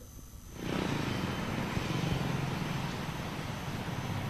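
A steady outdoor background rumble, like traffic, on an open microphone. It fades in about half a second in and then holds steady.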